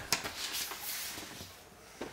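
Papers being handled on a table: a sharp click near the start, then soft rustling and small knocks that fade away.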